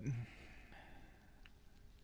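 A man's voice trails off, then a faint breathy exhale like a sigh into a close microphone, with a single faint click about one and a half seconds in.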